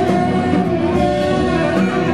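Live jazz band music with electric guitar to the fore over a steady beat on a drum kit.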